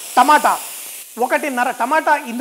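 Chopped tomatoes sizzling in hot oil in a steel kadai with roasted spices: a steady hiss that sets in as they hit the pan. A man's voice talks over it in short stretches.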